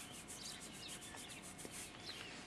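Faint outdoor sounds: birds chirping over a fast, even, high-pitched pulsing of about six or seven beats a second.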